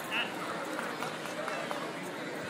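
Indistinct background voices and chatter of people around the match, with a brief raised voice about a quarter second in.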